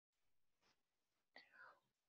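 Near silence, broken only by a faint, brief sound about one and a half seconds in.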